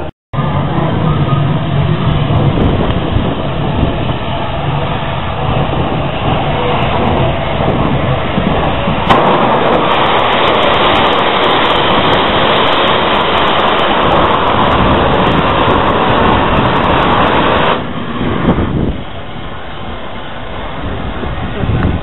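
Steam locomotive sounds at a station. From about nine seconds in, a loud, steady hiss of escaping steam runs for roughly nine seconds and then cuts off suddenly. It comes from Southern Railway N15 'King Arthur' class 4-6-0 No. 30777.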